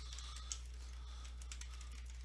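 Computer keyboard typing: a quick run of faint keystrokes, one click louder about half a second in, over a low steady hum.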